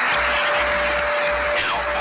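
Audience applause over background music: a pulsing low beat with a single held tone.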